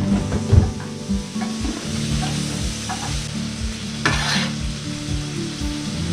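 Floured turkey pieces frying in a hot pan, sizzling, with a stronger burst of sizzle about four seconds in, and light clicks and a knock as a fork turns them in the pan. Background music plays under it.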